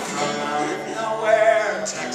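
A man singing to his own acoustic guitar, holding a long wavering note about halfway through.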